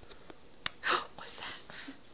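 Close handling noise on a phone: a baby's hand knocks against it with one sharp click about two-thirds of a second in, followed by soft, breathy, whispery sounds right at the microphone.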